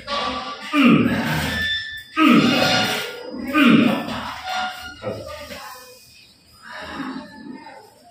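A man's loud cries of pain during a chiropractic adjustment of his leg and hip: three drawn-out 'ah' cries falling in pitch, about a second and a half apart, then quieter vocal sounds.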